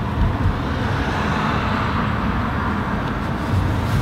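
Steady road-traffic noise: a continuous, even rush with a low rumble underneath.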